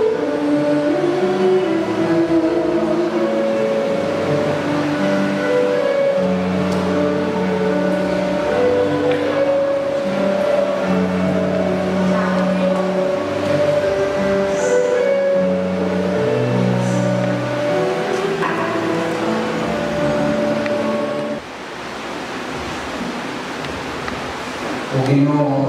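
Instrumental church music: slow, held chords on a keyboard, changing every second or two and turning softer near the end.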